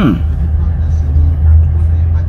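Steady low rumble of a car inside its cabin, engine and road noise. A man's voice gives a short falling sound right at the start.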